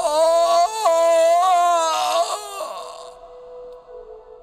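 A man's loud, drawn-out wordless cry with a slightly wavering pitch, lasting about two and a half seconds before it fades. It is a voice actor's dramatized death cry of Jesus on the cross. A steady sustained music tone sounds under it.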